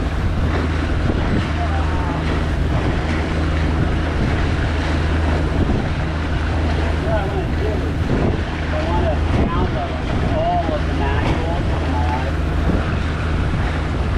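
Wind on the microphone aboard a sailboat under way, with water noise and a steady low hum.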